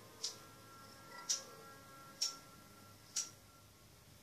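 Four sharp, evenly spaced clicks, about one a second.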